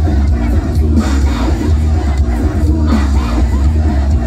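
Live band music played loud over a concert PA, with heavy pulsing bass, and a large crowd shouting and singing along close to the microphone.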